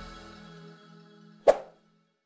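Background music fading out. About one and a half seconds in, a single sharp pop, a click sound effect for an animated subscribe button, is louder than the music and then cuts off sharply.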